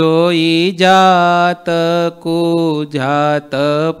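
A man singing a Gujarati devotional kirtan solo, in slow held notes that bend in pitch, with short breaks between phrases.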